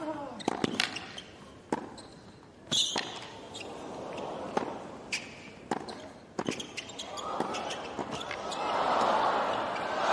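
Tennis ball struck back and forth in a hard-court rally: sharp racquet hits and bounces come every half second to a second. From about seven seconds in, crowd noise swells and builds toward a cheer as the point reaches its climax.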